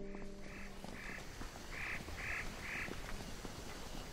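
Ducks quacking: short calls repeated a few times a second in loose clusters, over a faint outdoor background. A held note of music dies away in the first second.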